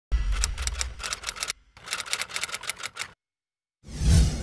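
Typewriter sound effect: two runs of rapid keystroke clicks, each about a second and a half long, with a short break between, as title text is typed onto the screen. A whoosh begins just at the end.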